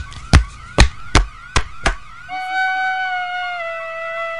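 A wailing siren with six heavy bangs in the first two seconds, then a steady held tone over the siren. The bangs fit someone smashing through the cafeteria's brick wall.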